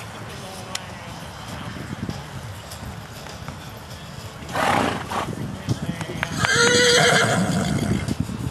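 Horse galloping on arena dirt through a barrel pattern, its hoofbeats an irregular low thudding. About halfway through there is a short loud burst, and about six seconds in a loud, drawn-out cry lasting over a second.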